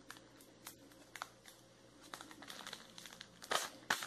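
Thin metallic plastic wrapper crinkling softly as it is handled and twisted around a cone, in scattered faint crackles, with a louder rustle about three and a half seconds in.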